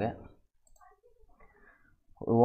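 A few faint computer mouse clicks.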